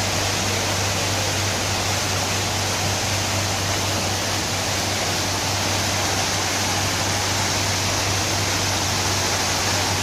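Fountain jets splashing down into a pool: a steady rush of falling water, with a low steady hum beneath it.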